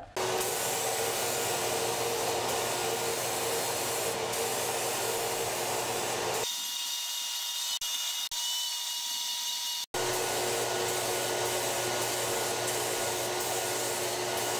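Paint spray gun hissing steadily as it sprays black paint onto walnut panels. The hiss changes abruptly about six and a half seconds in, becoming thinner with less low end, and returns to the fuller sound near ten seconds in.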